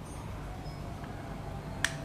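A single sharp click near the end, over faint room tone, as a hand tool meets the mounting bolt of a motorcycle's front brake caliper.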